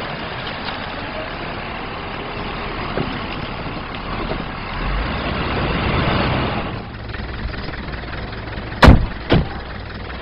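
Car driving through city traffic: steady engine and road noise. Near the end, two sharp knocks about half a second apart stand out as the loudest sounds.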